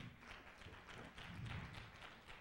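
Faint, scattered hand clapping from a congregation, heard from a distance through the pulpit microphone.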